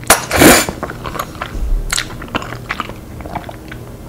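Close-miked eating of udon noodles in a thick cream curry sauce: one loud slurp just after the start, then wet chewing with many small mouth clicks and smacks.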